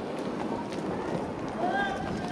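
Roller-skate wheels rumbling and clattering over a wooden rink floor, under the voices of people nearby, with a short rising-and-falling call near the end.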